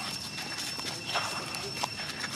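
Macaques moving over dry leaf litter: scattered crackles and rustles of small feet on dead leaves. A steady high-pitched tone runs underneath.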